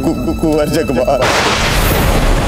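A man's voice, then about a second in a sudden loud musket blast whose long hissing, rumbling tail runs on.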